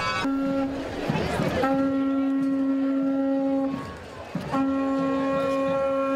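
A boat's horn sounds three blasts at one steady pitch: a short one, then two long ones of about two seconds each. It is the characteristic farewell salute to the Virgen del Carmen.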